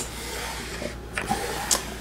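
Quiet handling of a wooden jewelry box as a swing-out tier is moved: soft wood rubbing with a light click about a second in and a brief hiss near the end.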